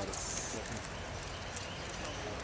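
A golf iron striking a ball off the tee: one short, sharp click a fraction of a second in, over the chatter of a gallery.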